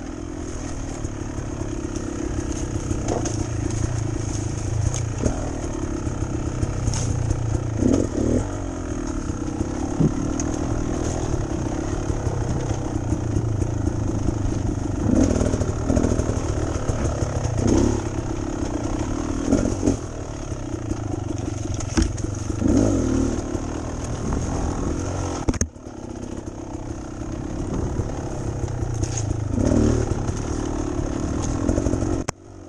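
Beta Xtrainer two-stroke dirt bike engine running under changing throttle on the trail, with repeated short rises in revs. The sound drops away briefly and sharply about 26 seconds in before the engine picks up again.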